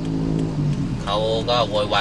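A steady low hum inside a car, heard on its own for about a second before a man's speech resumes.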